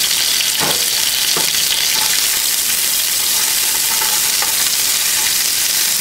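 Bell pepper strips and red pepper flakes frying in hot sesame oil in a nonstick skillet: a steady sizzle, with a few light knocks.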